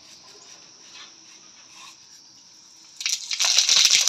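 Cumin seeds tipped into hot oil in a kadai (wok), starting to sizzle and crackle loudly and suddenly about three seconds in after a quiet stretch.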